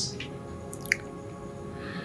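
Soft sustained background music, with one brief sharp click a little under a second in.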